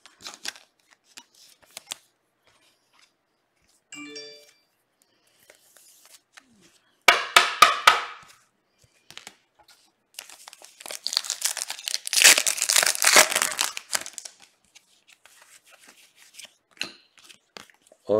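Foil wrapper of a trading-card pack crinkling and tearing as it is ripped open by hand, the loudest part a dense stretch of about three seconds in the second half. A shorter burst of sharp plastic crackles comes a few seconds before it, and a brief soft chime sounds about four seconds in.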